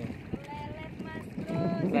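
People talking over steady wind noise on the microphone, with a single short click about a third of a second in.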